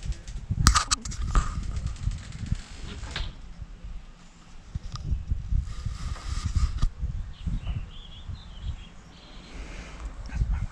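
Low rumble of wind and handling noise on a body-worn camera's microphone as the wearer moves about, with a few sharp knocks about a second in. A bird chirps briefly near the end.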